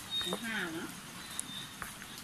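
Wooden chopsticks stirring saucy instant noodles on a plate, with a couple of sharp clicks against the plate, the clearest just before the end. Early on there is one short voiced sound whose pitch dips and rises again.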